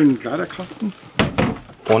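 A furniture cabinet door in a motorhome knocking shut with a short thunk about a second and a quarter in, after some quiet talk.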